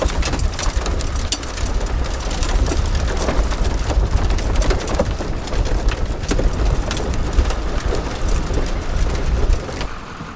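Pickup truck driving on a dirt and gravel road, heard from a camera mounted outside the vehicle: heavy wind rumble on the microphone with a steady crackle of tyres over gravel. It cuts off near the end.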